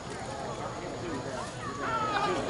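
Several distant, overlapping voices of players and spectators calling out across a softball field during a live play, growing louder near the end.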